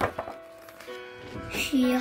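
A paper page of a picture book being turned, a brief rustle right at the start, over soft background music with steady held notes. A child's voice starts reading near the end.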